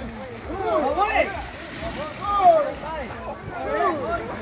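Several people talking and calling out over one another, with a low steady rumble underneath.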